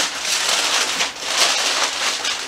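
Heavy-duty aluminium foil crinkling and crackling as it is folded and pulled tight around a slab of ribs, with a brief lull about halfway through.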